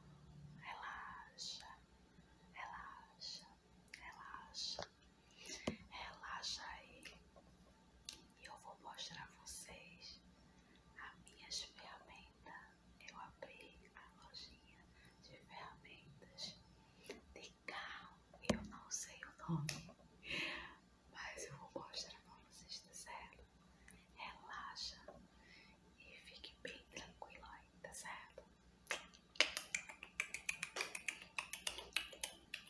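Soft, close whispering in short broken phrases. Just before the end, a quick run of even clicks or taps starts.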